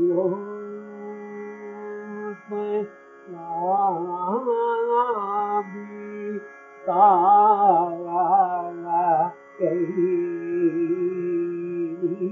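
Male voice singing Carnatic music in raga Kedaragowla over a steady drone, holding long notes and moving into wavering, ornamented phrases twice, with short breaths between phrases.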